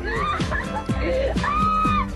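A dog whining in drawn-out high cries whose pitch bends slightly, over background music with a beat.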